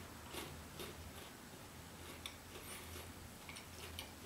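Faint, scattered small clicks of someone quietly chewing a bite of a Kit Kat wafer bar with the mouth closed, over a steady low room hum.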